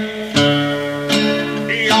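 Music: acoustic guitar strumming chords between sung phrases, the chord changing about every second. A singing voice with vibrato comes back in near the end.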